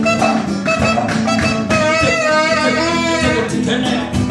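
A live band playing: acoustic guitar and percussion keep a steady rhythm, and a saxophone holds one long, slightly wavering note through the middle.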